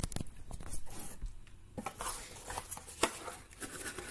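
Cardboard packaging being handled: a run of small knocks, scrapes and rustles as the box's inner cardboard tray is pulled out.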